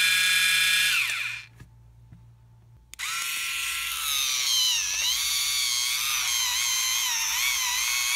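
Calily electric callus remover's small motor whirring with a high whine; it spins down and stops about a second in, then starts again about three seconds in. From about four seconds its pitch dips and wavers under load as the spinning grinding roller is pressed against the heel.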